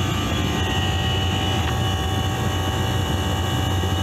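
Refrigeration condensing unit running: a steady hum from its compressors and condenser fans, with a few faint steady tones over it.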